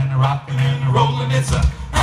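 Southern gospel male vocal quartet singing in harmony over instrumental accompaniment with a steady bass, the phrases broken by two short breaks.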